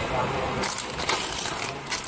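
Filled plastic snack bags crinkling and rustling as they are handled on a scale, with a few sharp crackles of the film.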